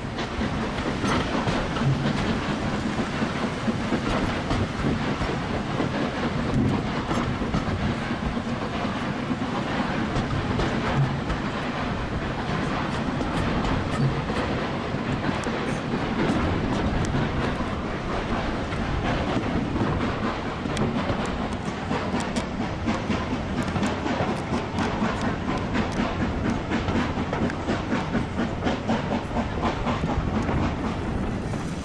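Railway carriage running along the line, heard from an open window: a steady rumble of the wheels on the track, with repeated clicks as they pass over rail joints, coming more often in the second half.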